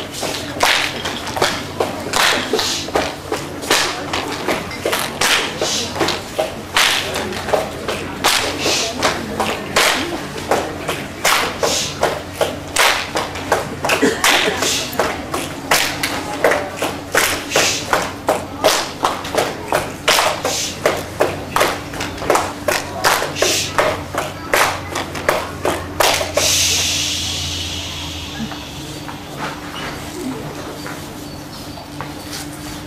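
A crowd clapping together in a steady rhythm, about two to three claps a second, stopping about 26 seconds in.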